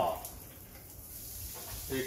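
Water spraying from the overhead rain shower head of a Eurolife EL-SC903 shower column just turned on: a steady hiss of falling water that grows slightly louder toward the end.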